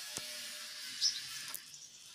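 Quiet background hiss with a soft click just after the start and a brief faint sound about a second in.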